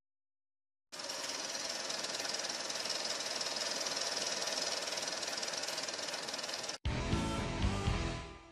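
Film projector sound effect: a steady, fast mechanical clatter and whir of film running through a projector, starting about a second in and cutting off suddenly near seven seconds. Music with a deep bass begins at the cut.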